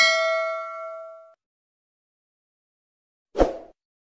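Notification-bell sound effect from a subscribe-button animation: one ding that rings and fades out over about a second. Near the end there is a brief dull thump.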